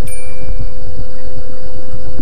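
A single short bell-like ding from a subscribe-button sound effect, ringing out and fading within about half a second. Under it runs a loud, steady low rumble with a constant hum.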